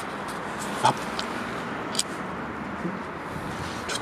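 A steady noisy hiss and rumble with a few short, sharp clicks, the loudest about a second in and another at two seconds.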